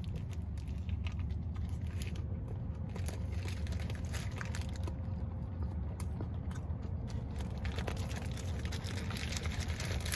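Close-miked biting and chewing of a Whopper burger: soft crunches of lettuce and bun with many small mouth clicks, over a steady low hum.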